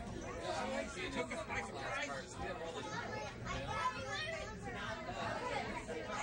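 Indistinct chatter of several people talking in a crowded passenger car, with no clear words standing out, over a steady low rumble.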